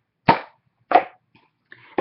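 A woman coughing twice, two short, sharp coughs a little over half a second apart.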